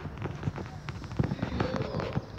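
Irregular sharp cracks and pops, several a second, with faint voices near the end.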